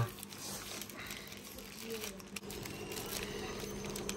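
Faint crackle of black electrical tape being peeled off the roll and wrapped around a bundle of fibre optic strands, over a steady low hum.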